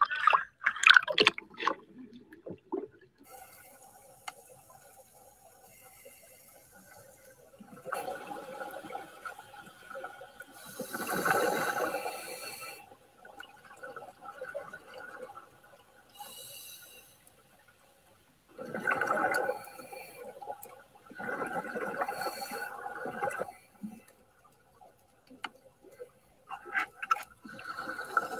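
Scuba divers' regulator exhalations underwater: bursts of rushing, gurgling bubbles every few seconds, the longest and loudest about eleven seconds in. There is a splash about a second in. The sound comes from a video played over room speakers.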